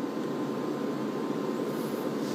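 Steady background hiss of room noise, an even rush with no change.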